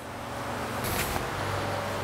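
Steady rushing noise with a low hum underneath, growing slightly louder, with a short hiss about a second in.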